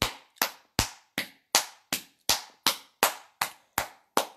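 A person clapping their hands in a steady rhythm, about eleven sharp claps at roughly three a second.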